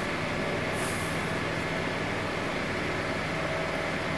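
A steady mechanical drone: an even hiss with a constant low hum and a few fixed tones, unchanging throughout.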